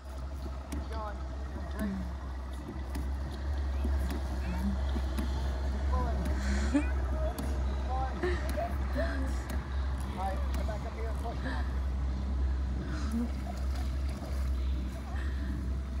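Faint, indistinct voices of people talking, over a steady low rumble.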